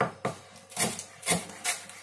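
A kitchen knife slicing leek into thin julienne strips on a plastic cutting board: about five crisp cutting strokes, each blade stroke crunching through the leek layers and tapping the board.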